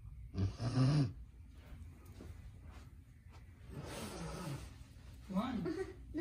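A person snoring: a loud rasping snore about half a second in and a weaker one around four seconds. A short voice-like sound follows near the end.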